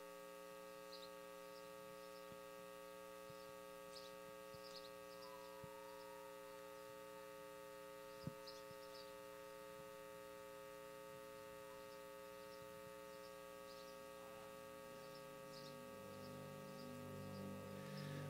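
Near silence: a faint steady electrical hum in several tones from the sound system, with one brief click about eight seconds in and a low tone swelling in near the end.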